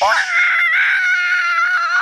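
A person's voice giving one long, high-pitched mock scream, held steady and falling off at the end.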